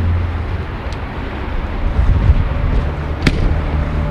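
Steady low rumble of distant road traffic, with a single sharp click about three seconds in.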